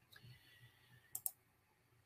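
Two quick clicks close together, about a second in, from a computer's input; otherwise near silence.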